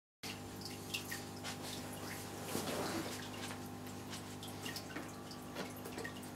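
Aquarium water trickling and dripping in small irregular ticks over a steady low hum, as from a tank's filter or pump running.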